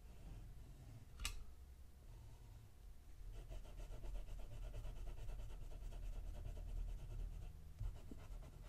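Pelikan M800 fountain pen's broad nib scratching on paper while drawing an ink swatch. There is a faint click about a second in, then from about three seconds rapid back-and-forth hatching strokes.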